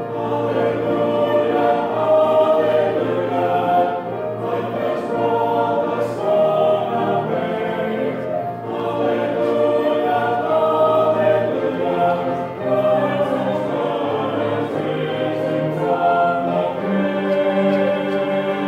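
Mixed church choir of men and women singing continuously.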